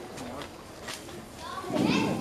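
Voices: low background chatter, then one person's voice breaking in loudly near the end.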